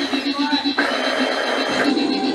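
Live harsh-noise electronics: a fast-pulsing low drone under a steady high whine, with a block of dense hiss that switches on just before the middle and cuts off abruptly near the end.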